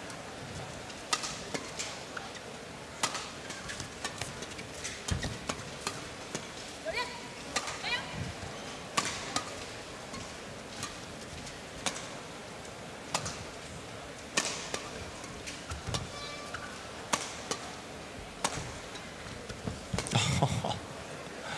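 Badminton rally: rackets striking the shuttlecock in sharp hits about once a second, with shoes squeaking on the court floor now and then over steady arena crowd noise.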